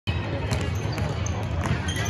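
A basketball bouncing a few times on a hardwood gym floor, sharp separate strikes over a steady hum of the hall and people talking.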